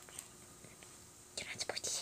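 Quiet, then a child briefly whispering near the end.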